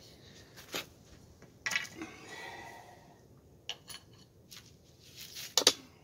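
River cane shafts being handled, giving a few sharp clicks and clacks with a short rustle between them; the loudest pair of knocks comes near the end as a shaft is drawn from a bundle of cane.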